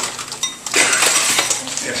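Cutlery and dishes clinking at dining tables: several light clicks and clinks, one ringing briefly about half a second in, with a short burst of noise about a second in.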